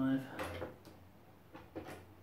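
Hydraulic trolley jack being pumped by its handle: a few short clunks and creaks spread through the two seconds as the jack raises the load on the lever arm.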